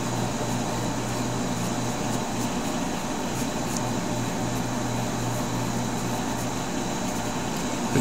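Steady low hum with a constant hiss, an unchanging mechanical background noise in a small room.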